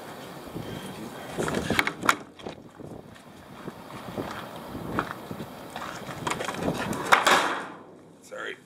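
Scuffs and knocks of someone moving around and handling a steel dumpster, with a louder rushing scrape about seven seconds in that fades within half a second.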